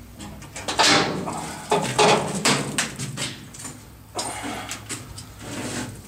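Metal scraping and rattling in a series of irregular bursts as a cable-locked, welded metal door is worked at.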